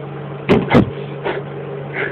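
Two loud knocks about half a second in, a quarter second apart, then a fainter one, over a steady electrical hum.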